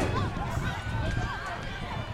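Many overlapping voices of people at an outdoor track meet talking and calling out at once, none clearly picked out, with a low rumble underneath.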